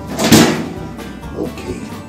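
An oven door shutting with a bang about a third of a second in, over background music.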